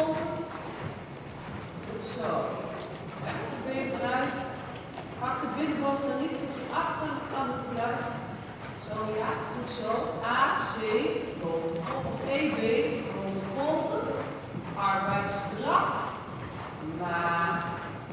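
Hoofbeats of several horses moving over the sand footing of an indoor riding arena, with people's voices talking throughout.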